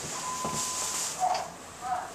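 A house front door being pulled open, with a thin steady squeak lasting under a second over a hiss, and a faint click about half a second in.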